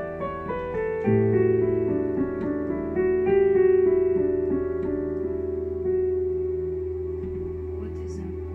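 Keyboard playing a piano sound in a slow, meditative improvisation in D major. Notes step down at first; about a second in, a low bass chord comes in and is held under a few higher melody notes, then it slowly dies away toward the end.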